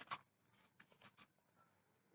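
Near silence, broken by a few faint, short clicks near the start and around a second in.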